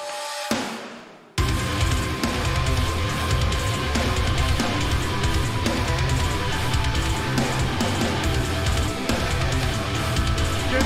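Post-hardcore song with heavy distorted guitars and drums playing. A quiet opening and a short swell that fades away give way, about a second and a half in, to the full band coming in hard.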